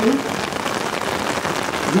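Steady rain falling, an even pattering hiss, in a pause between a man's chanted phrases into a microphone; his voice trails off just after the start and comes back in at the very end.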